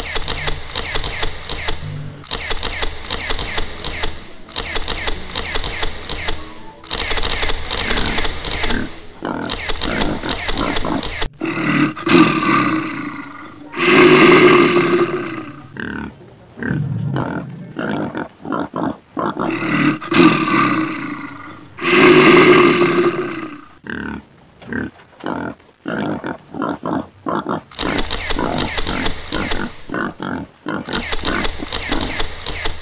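Rapid mechanical clicking for the first ten seconds or so, then four loud animal roars dubbed in as sound effects, followed by irregular clicking near the end.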